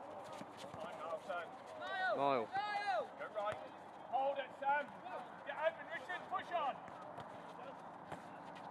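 Footballers shouting to each other across the pitch: several short calls rising and falling in pitch, the loudest about two to three seconds in, with faint knocks of running feet and the ball between them.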